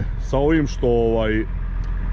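A man's voice says a short word and then a drawn-out, level hesitation sound, over a steady low engine hum.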